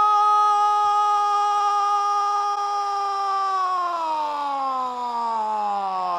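A football commentator's long, loud goal cry, one vowel held on a single high pitch, then sliding steadily down in pitch over the last couple of seconds.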